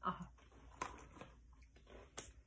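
Faint crunching of a potato chip being chewed, with a few sharp crackles about a second in, after a short "oh".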